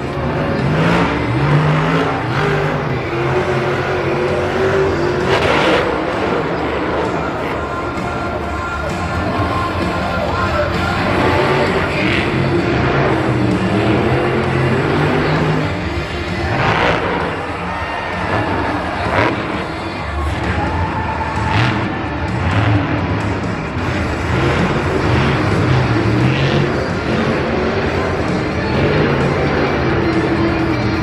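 Monster truck's supercharged engine revving hard in repeated surges, its pitch climbing and falling again and again, over stadium music.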